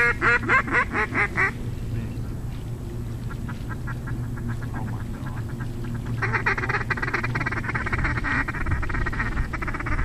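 Mallard-style quacking in fast runs of about six or seven quacks a second: a loud run at the start, fainter runs in the middle, and a long dense run about six seconds in.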